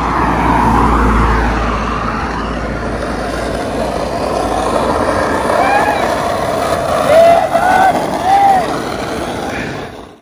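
A silver Audi A4 sedan driving by on the street, with a low engine and tyre rumble strongest in the first two seconds. Then the steady rumble of skateboard wheels rolling on rough asphalt, with a few short vocal calls between about five and a half and eight and a half seconds in.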